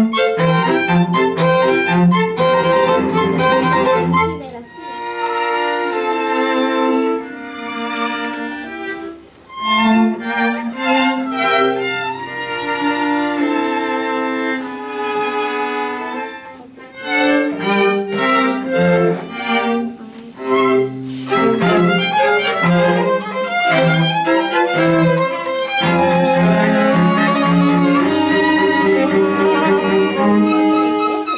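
A string quartet of two violins, viola and cello playing live, with sustained bowed notes. The music briefly quietens about 5, 10 and 17 seconds in.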